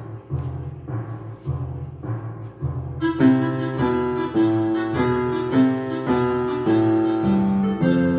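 Upright piano playing a beginner's piece. Low notes repeat evenly at first, and about three seconds in a melody in the middle register joins above them and carries on.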